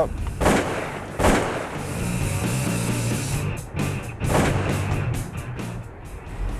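Shotgun shots fired at ducks: two about a second apart near the start and a third about four seconds in, each ringing out briefly, over background music.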